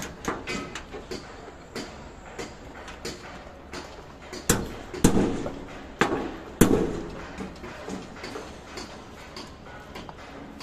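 Sharp knocks and clanks of hard objects striking each other, scattered throughout, with four louder bangs in quick succession near the middle, over a low steady background rumble.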